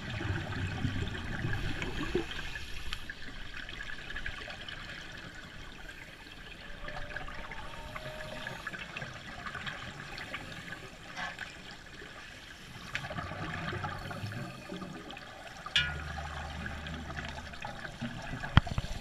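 Scuba regulators' exhaust bubbles gurgling and rising as divers breathe, heard underwater, with a sharp click about three-quarters of the way through.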